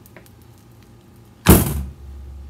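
A single loud thunk about one and a half seconds in, from the metal multi-wire soap cutter being worked through a loaf of cold process soap, preceded by a few faint clicks.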